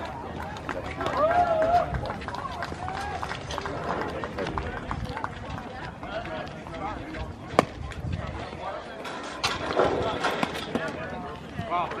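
Voices of spectators talking in the background, with one sharp pop about seven and a half seconds in: a pitched baseball smacking into the catcher's leather mitt.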